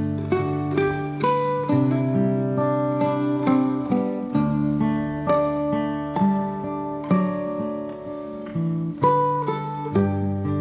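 Mandolin and acoustic guitar duet playing a slow instrumental folk piece: a picked mandolin melody with ringing notes over a fingerpicked guitar accompaniment with sustained bass notes.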